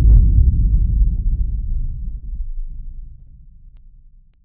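A single deep boom that starts suddenly, followed by a low rumble that dies away over about four seconds.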